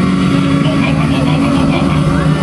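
Loud live church band music, steady held low keyboard tones over a drum kit, with a voice over it.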